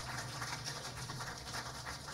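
Quiet live-stage ambience between numbers: a steady low hum from the amplification under a faint haze, with small scattered rustles and clicks.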